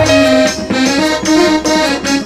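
Instrumental break in a Sambalpuri song: a melody of held notes over chords, with no low drum beat and no singing.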